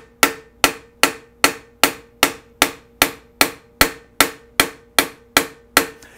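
A hammer striking a spoon bowl on a steel stake in an even rhythm, about two and a half light blows a second, each strike ringing briefly with a steady metallic tone. This is the spoon's bowl being reformed by planishing-style hammering.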